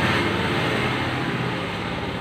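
A steady rushing background noise with a faint low hum, slowly fading toward the end.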